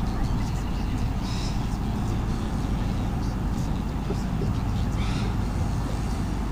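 Steady low rumble with a constant hum, the background noise of an outdoor camera microphone, with brief high-pitched sounds about one and a half seconds and five seconds in.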